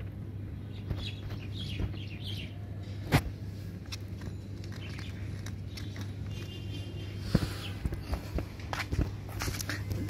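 Footsteps and handling knocks on a concrete rooftop as the filmer walks between pots, the sharpest knock about three seconds in. Birds chirp faintly in the background, over a steady low hum.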